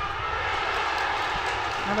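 Stadium crowd cheering steadily just after a penalty kick is scored.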